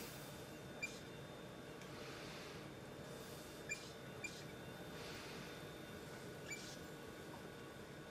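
Faint operating-room ambience: a steady low hiss and hum of equipment with a few soft swells of hiss, and four or five brief high-pitched blips spread irregularly through it.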